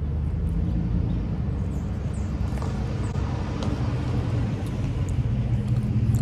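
Steady low hum and rumble of a running motor, even throughout, with a few faint light ticks over it.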